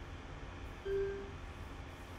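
A single short electronic beep, one steady pitch lasting about half a second, about a second in, over a low hum: the intercom web app's tone as a new call line is joined.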